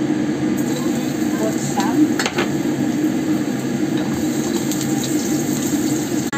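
Chopped garlic sizzling in hot oil in a wok, the hiss starting about half a second in once the garlic is tipped in. There are a couple of sharp clicks about two seconds in, over a steady low hum.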